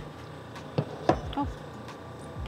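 A few light clicks and knocks about a second in, from a glass coffee cup and a stainless steel thermal carafe being handled.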